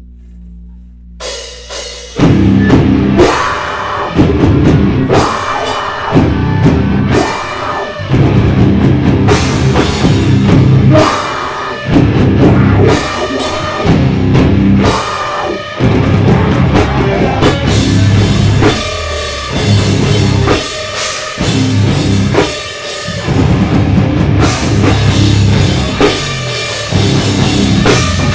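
Live metalcore band playing loud: after a low hum, distorted electric guitars, bass guitar and drum kit with cymbals crash in about two seconds in, then play in choppy stop-start hits with short gaps between them.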